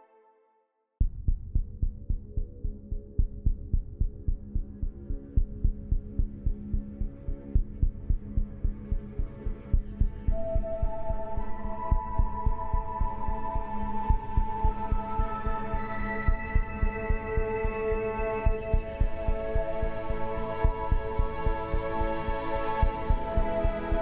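Ambient meditation music. One piece fades out to silence; about a second in, a new one begins with a low, throbbing pulse a little over two beats a second. Sustained held tones join it about ten seconds in.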